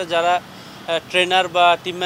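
A man speaking, with a short pause about half a second in.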